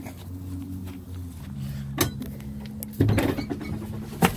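Sharp metallic clunks and knocks as someone climbs into the cab of an LMTV military truck: one about two seconds in, and a louder clunk with a brief rattle about three seconds in. Under them runs a steady low hum.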